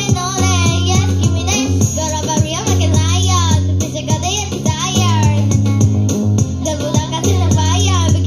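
Young girls singing into a microphone over an amplified backing track with a steady bass line.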